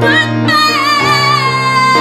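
A woman singing live, changing note about half a second in and then holding one long note with vibrato over sustained instrumental accompaniment.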